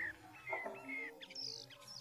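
Small birds chirping: a quick string of short, curving chirps, then a couple of higher, thinner calls in the second half.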